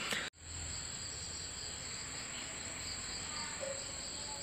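Steady insect chorus: a constant high trill with a quicker pulsing one just below it. The sound cuts out for a moment shortly after the start.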